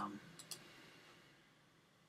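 Two quick computer mouse clicks about half a second in, then faint room tone.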